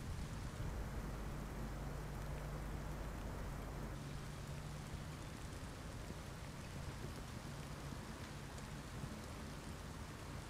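Steady rain falling, an even hiss, with a low steady hum underneath.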